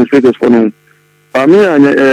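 A man talking, with a break of about half a second in the middle, over a faint steady hum.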